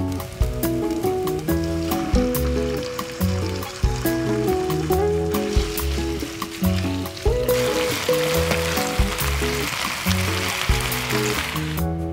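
Sliced mushrooms and then chicken pieces sizzling as they are stir-fried in a pan with a spatula. The sizzle grows louder through the second half and cuts off suddenly just before the end. Light acoustic background music with plucked strings plays throughout.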